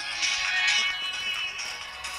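Mobile phone ringing with a music ringtone: a song with a gliding melody, coming thin through the phone's small speaker with no bass.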